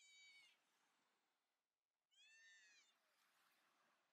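A bird calling twice, faintly: one short high call at the start and a second, longer call with a downward-arching pitch about two seconds in.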